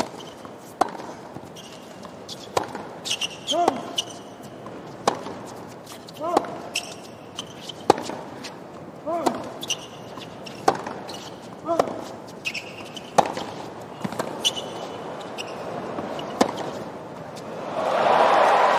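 Tennis rally on a hard court: a serve and then more than a dozen racquet strikes on the ball, about one every second and a half, with players grunting on several shots and shoes squeaking on the court. The crowd breaks into cheering right at the end as the point is won.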